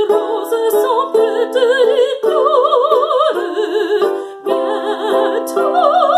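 A woman singing a French art song in a classical style with a wide, even vibrato, over an instrumental accompaniment of held chords. There is a short break for breath a little past four seconds in.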